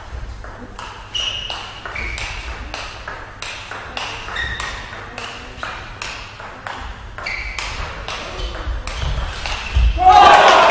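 Table tennis rally: the ball clicking off the rackets and the table in a steady run of sharp ticks, about three a second, some with a short ringing ping.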